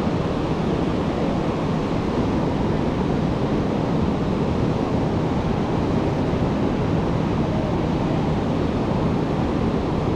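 Ocean surf breaking and washing on a sandy beach, a steady rushing noise, with wind buffeting the microphone.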